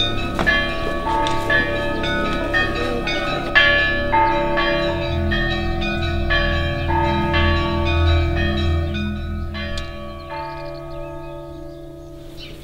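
Orthodox church bells ringing: several bells of different pitch struck in quick succession, about two strikes a second, each ringing on. A deep bell joins about five seconds in, and the ringing fades near the end.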